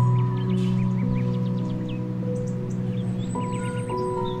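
Slow, calm background music of long held tones, with short bird chirps mixed in over it.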